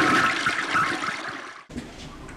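A toilet flushing in a public restroom: a rush of water that eases off, then cuts off suddenly near the end.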